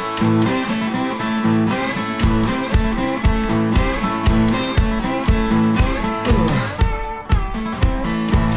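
Instrumental opening of a country-blues song, with slide guitar playing sustained notes and a sliding drop in pitch near the end. About two seconds in, a steady low beat joins at about two beats a second.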